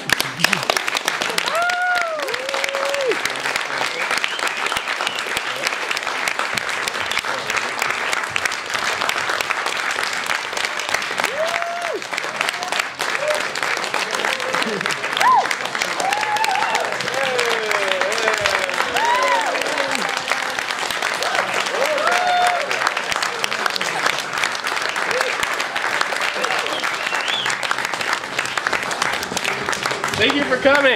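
Audience applauding steadily, with shouted whoops and cheers rising above the clapping every few seconds.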